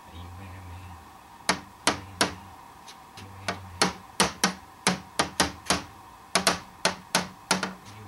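A small red emergency glass hammer of the kind carried on buses, tapping against a door's glass pane. From about a second and a half in there is a string of some fifteen sharp, irregularly spaced taps, and the glass does not break.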